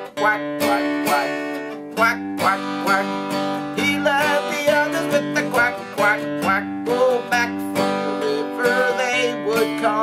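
Capoed Taylor acoustic guitar played on a D chord in a pick-strum pattern, a single bass string picked and then the chord strummed, about two strokes a second.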